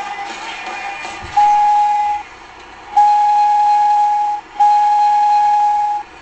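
Steam train whistle blowing three times, one short blast then two longer ones close together, each on one steady pitch, over background music.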